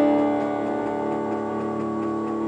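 Digital piano chord struck just before and held, slowly fading, with a faint regular ticking under it.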